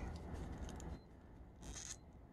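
Faint handling noise of a plastic Star Wars Black Series Night Trooper action figure being held and posed, with a brief light scrape near the end as its arm is moved.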